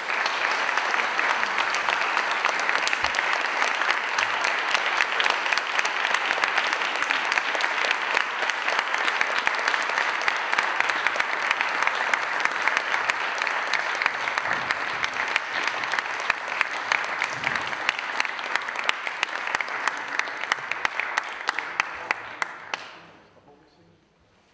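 Audience applauding, steady for about twenty seconds, then dying away and stopping shortly before the end.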